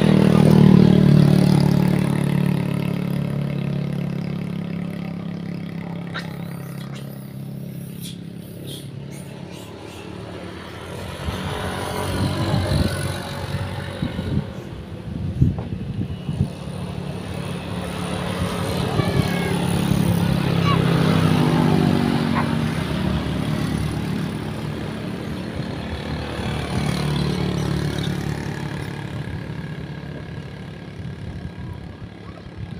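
Motorbikes passing on the road, engine sound swelling and fading. The loudest pass is about a second in, its pitch falling as it goes by. Another pass swells past around two-thirds of the way through.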